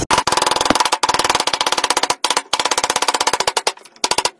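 Hammer driving a square wooden stick down through a steel dowel plate, a fast, even run of sharp knocks with a short break about two seconds in.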